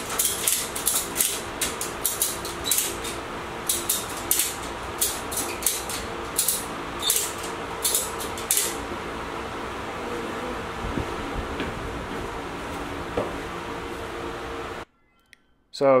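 Ratchet strap being cranked in short strokes, giving a run of sharp clicks for the first nine seconds or so as it takes up strap to lift an atlas stone hanging from a scale. Under it a floor fan runs with a steady hum.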